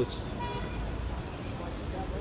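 City street traffic: a steady low rumble of cars passing on the road.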